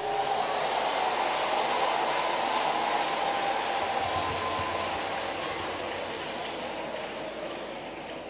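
A large congregation applauding and cheering together, a steady wash of noise that slowly dies down.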